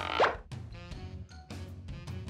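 A cartoon plop sound effect, one quick falling pitch glide about a quarter second in, over light children's background music.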